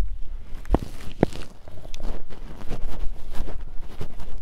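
Footsteps walking over grass, with wind buffeting the microphone as a low rumble; two sharper thuds about half a second apart near the start.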